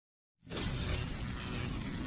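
Intro sound effect: silence, then about half a second in a sudden dense crashing noise sets in over a deep rumble and runs on steadily.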